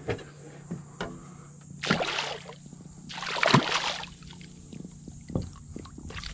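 A hooked redfish splashing at the water's surface beside the boat: two short bursts of splashing, about two seconds and three and a half seconds in, the second louder.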